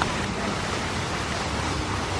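Steady rushing and splashing of water from a garden fountain, an even hiss with no break.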